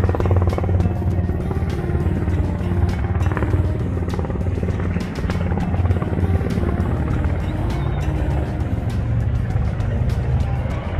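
A Sikorsky S-92 rescue helicopter flies overhead, its rotor beating steadily over a low engine hum. Background music plays along with it.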